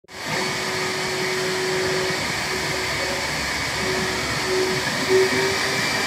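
Steady whooshing of a motor-driven blower, with a hum that fades in and out.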